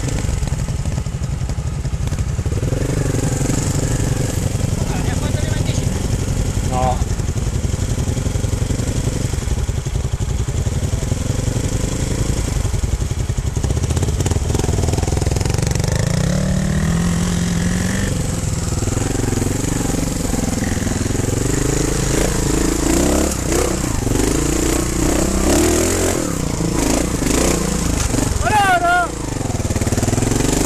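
Trial motorcycle engine ridden at low speed up a rocky path, the revs rising and falling as the throttle is worked, with a rise in pitch about halfway through.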